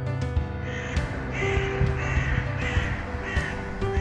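A bird outdoors giving about five short, rough calls in a series, over soft background music with steady held notes.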